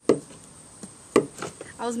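Two sharp knocks about a second apart, from small things being handled on a wooden table.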